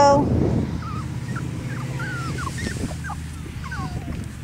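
Puppies whimpering: a string of short, high squeaks, about ten, scattered through, during rough play with a bigger dog that mouths at their necks.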